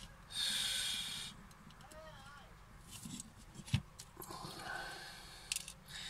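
Light handling noises of a small circuit board and its components in the fingers: a few sharp clicks, with a loud hiss lasting about a second near the start and a softer one later.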